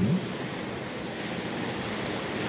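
Steady, even background hiss with no other sound in it.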